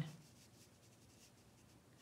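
Faint, soft scratching of a wet watercolor brush being dabbed and stroked across cold-press watercolor paper.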